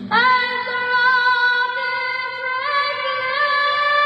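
A woman singing the national anthem over a stadium PA, holding long sustained notes that step up in pitch about two-thirds of the way through.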